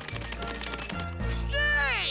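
Cartoon background music with a stepping bass line. About one and a half seconds in, a loud wordless yell in a cartoon boy's voice, its pitch rising and then falling.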